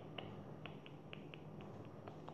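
Faint, irregular light clicks, several a second, over a low steady hum.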